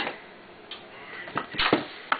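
Handling noise: a click at the start, then a few sharp clicks and a short scraping rustle about a second and a half in.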